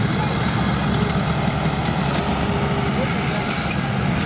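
Hot-rodded Farmall M tractor engine, its fuel turned up, running hard under load on a pull with a steady, rapid firing beat.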